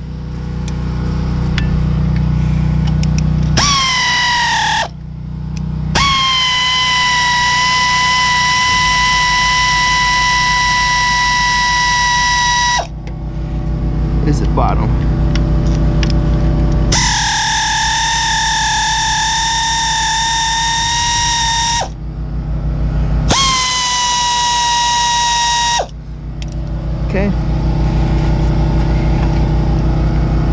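Air ratchet with a 7 mm hex bit backing out the brake caliper bolts. It runs in four bursts of steady whine, the longest about seven seconds, and the pitch dips slightly as each burst starts.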